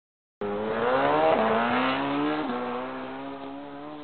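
A vehicle engine accelerating through the gears, its pitch rising and dropping at two shifts before it fades out. It starts and stops abruptly and sounds thin, with no treble, like a logo sound effect.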